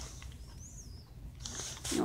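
A faint, short high squeak that rises and falls, then a brief rustle, as a costume chest plate's strap and buckle are worked loose. A steady low hum lies underneath.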